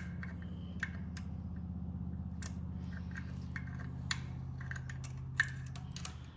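Scattered light metallic clicks and taps as rocker-arm and adjustable pushrod parts are handled on an LS engine's cylinder head, over a steady low hum.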